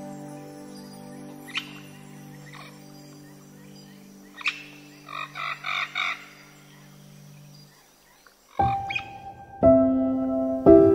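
Slow relaxing piano music with held low chords that fade away, while birds chirp over it, including a quick run of four chirps about five seconds in. After a moment's pause near the end, a new piano phrase begins.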